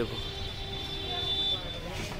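A motor vehicle's engine running, a steady hum with a faint high whine, after one short spoken word at the start.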